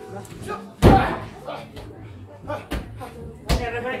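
Wrestlers' bodies slamming onto the boarded ring canvas: one loud slam just under a second in, then two more sharp impacts later.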